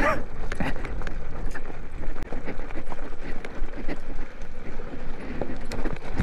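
An electric beach cruiser's tyres rolling over loose rocks and gravel: continuous crunching with many small knocks and rattles from the bike as it goes over the bumps.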